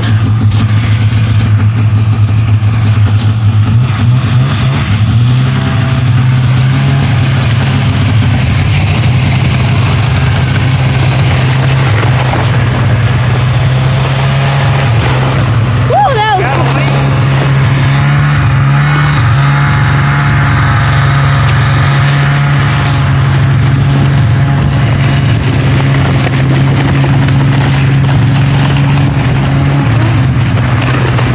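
Snowmobile engine running steadily under way, its pitch rising a few seconds in as it picks up speed, over a constant rushing noise. A brief wavering high tone comes about halfway through.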